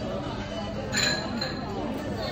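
A single sharp clink about a second in, ringing briefly, over a steady background of people's voices chattering.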